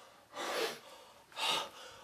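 A man's two sharp gasping breaths, about half a second and a second and a half in, as he catches his breath after being startled.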